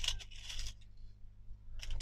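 Small metal bulb pins clicking and rattling against each other and the plastic compartments as fingers rummage through an organiser box, in a cluster at the start and a few more clicks near the end.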